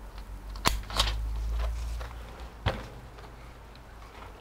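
Sharp plastic-and-metal clicks as a laptop SO-DIMM RAM module is pressed down into its slot and the retention clips catch, three clicks in all, with a low rumble of handling as the laptop is moved.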